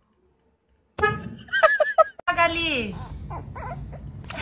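Near silence for about a second. Then a person's voice sets in suddenly, high and excited, swooping up and down in pitch, with one long falling sweep.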